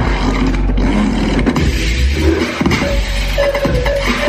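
Loud dance music with a deep bass line, played over the hall's PA speakers.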